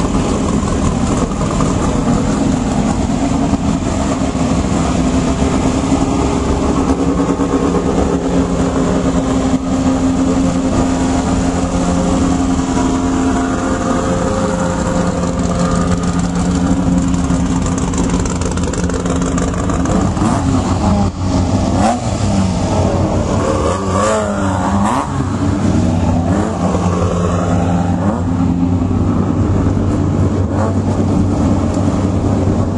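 Off-road race buggy engines running in a staging line, a steady loud engine note with the pitch shifting and rising briefly about two-thirds of the way through, as engines are revved.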